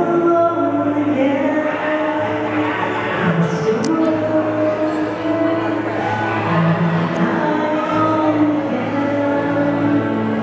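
Karaoke song playing loudly: a backing track of long held notes, with a voice singing over it.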